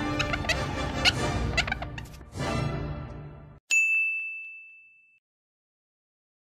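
Upbeat background music that cuts off about three and a half seconds in, followed at once by a single bright ding chime, a 'sparkle' sound effect, that rings on one high note and fades away.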